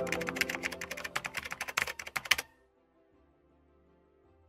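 Keyboard-typing sound effect: a fast, irregular run of clicks, about eight a second, over held music notes. It stops about two and a half seconds in, leaving near silence.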